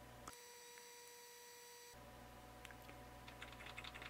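Near silence: faint room hum with a few faint short clicks in the second half.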